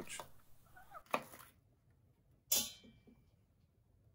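Kitchen knife cutting through a fresh bamboo shoot onto a wooden cutting board: two short, sharp cuts, a smaller one about a second in and a louder one about two and a half seconds in.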